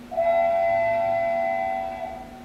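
Train whistle sound effect: one long, steady, chord-like blast lasting nearly two seconds, signalling the approaching train.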